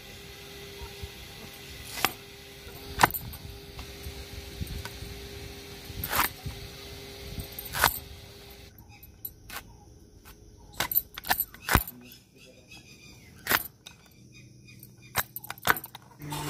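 Raw green mangoes being chopped with a sarauta, a traditional Indian fixed-blade cutter, on a wooden board: about ten sharp, irregularly spaced cracks and knocks as the blade cuts through the fruit and its hard stone casing to free the kernels.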